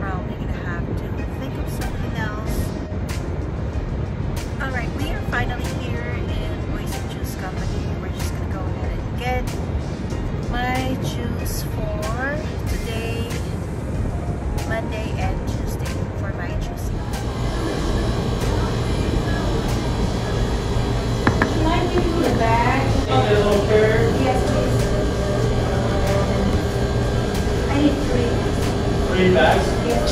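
Low steady rumble with a faint voice, then, from about halfway in, background music and people talking.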